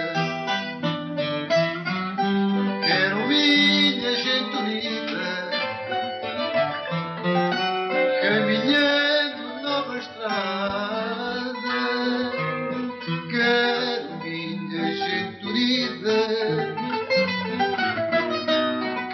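Portuguese guitar (guitarra) and classical guitar (viola) playing a passage of a song together, plucked notes throughout.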